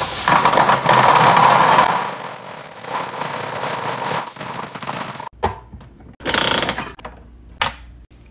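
Gumballs pouring from a plastic bag into a gumball machine's globe: a dense rattling clatter for about five seconds that thins out as the pour slows. After a break come a shorter burst of mechanical rattling and a sharp clunk near the end, a gumball being dispensed.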